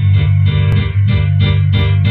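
Instrumental backing track for a rap, with a heavy steady bass under a regular pulsing beat of about three pulses a second.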